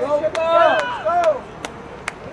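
High-pitched shouted calls from voices on a soccer field, drawn out and rising and falling, filling the first second and a half. A few sharp knocks come through, one near the end.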